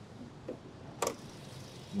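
A single sharp click about a second in, the bonnet being opened, over the faint steady hum of a Hyundai Santa Fe's 2.5 petrol four-cylinder idling very quietly.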